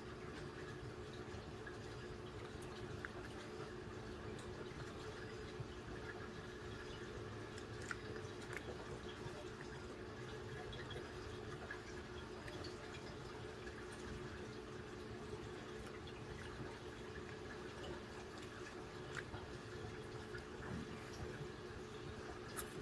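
Aquarium filter running: a faint steady hum with water trickling and a few light drips.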